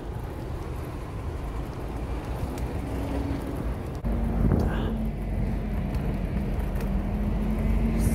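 Wind and road rumble on a phone microphone riding a scooter through city traffic. About halfway through the rumble gets louder and a steady low hum joins it.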